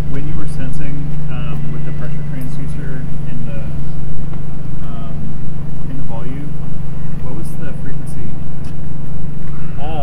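A steady low mechanical hum that holds constant under indistinct talking.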